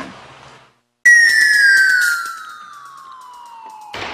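Broadcast transition sound effect: after a brief silence, a single tone starts suddenly about a second in and glides steadily down in pitch for about three seconds. It is loud at first and softer in its second half.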